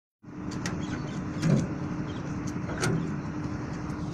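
A steel wheeled material cart rumbling and rattling over a rough concrete roof, with several sharp metallic clanks; the loudest knock comes about a second and a half in. A steady low hum runs underneath.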